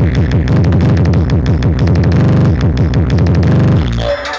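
Electronic dance music with heavy, very loud bass and a driving beat, played through a large stacked-speaker sound system set up for a sound-competition. Right at the end the bass drops out.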